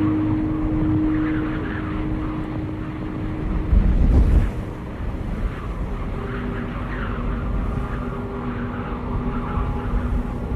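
Dark ambient horror film score: long held drone notes, with a low rumbling swell about four seconds in that dies away quickly.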